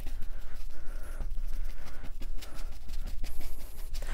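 Paintbrush dabbing acrylic paint onto a canvas: a quick, irregular run of soft taps as a cloud highlight is stippled on.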